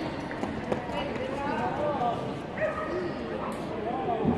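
Indistinct voices of people talking in a large hall, with a dog barking.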